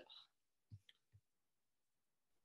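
Near silence, with three faint short clicks about a second in.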